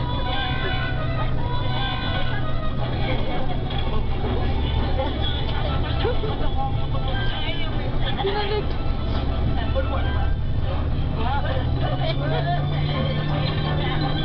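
Bus engine running with a steady low drone that steps down in pitch about four seconds in and rises again near the end. Over it comes a film soundtrack of dialogue and music from the bus's onboard TV speakers.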